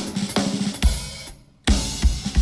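Live rock band music driven by a drum kit, with kick, snare and cymbals. It breaks off for a moment near the end, then the full band crashes back in with fast drumming.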